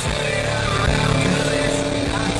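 Porsche Cayman's engine running steadily at track speed, heard from inside the cabin along with road noise.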